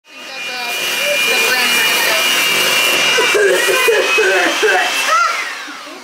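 Aerosol spray can hissing in one long continuous spray with a thin whistle on top. It fades out about five seconds in as the spray stops.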